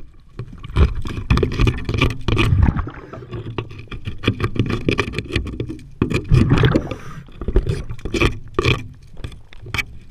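Underwater noise of a diver working along a boat hull: irregular swells of bubbling and rumbling, broken by many sharp knocks and scrapes against the hull.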